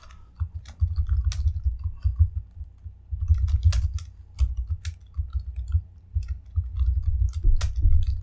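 Typing on a laptop keyboard: irregular key clicks and taps with dull low thuds under them.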